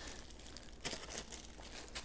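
A clear plastic packaging bag crinkling faintly as it is grabbed and lifted, with a few soft crackles.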